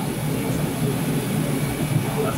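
Steady low rumble of a moving vehicle's interior, heard from inside the cabin.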